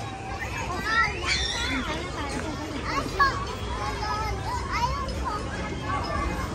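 Children playing: many high voices calling out and chattering over each other, with a steady low background hum of a crowd outdoors.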